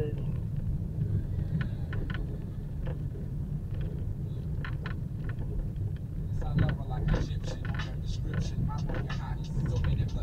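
Steady low rumble of a car driving slowly, heard from inside the cabin, with scattered short clicks and ticks that come more often in the second half.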